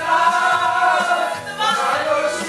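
A group of men singing together along with a karaoke backing track.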